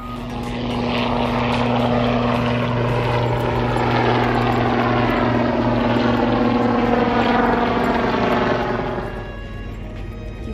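Helicopter flying past at low altitude: a loud, steady rotor and engine drone that swells in about half a second in and fades near the end, its higher tones sliding down in pitch as it goes by.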